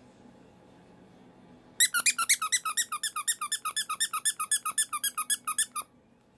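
Rubber squeaky toy squeezed rapidly: a fast, even run of sharp high squeaks, about eight or nine a second, starting about two seconds in and lasting about four seconds before stopping abruptly.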